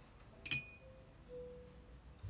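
A single light clink about half a second in, with a short bright ring, over quiet jazz music with held notes.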